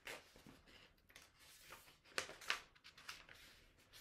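Faint rustling and swishing of a paperback picture book's pages being handled and turned, with two brief louder page swishes a little past halfway.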